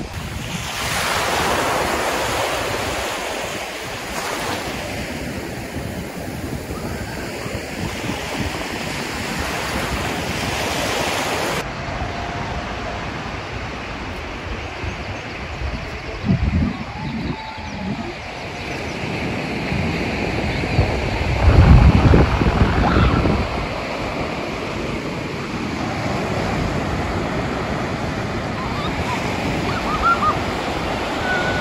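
Surf washing onto a sandy beach as a steady rush, with wind buffeting the microphone in low gusts. The strongest gust comes about two-thirds of the way in.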